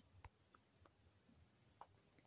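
Near silence broken by about five faint, sharp clicks, the first and loudest right at the start.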